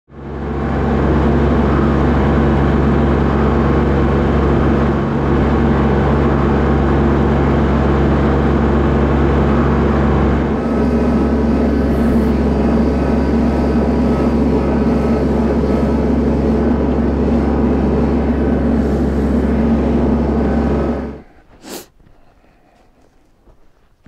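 Kubota L3301 compact tractor's diesel engine running steadily and loudly, cutting off suddenly near the end.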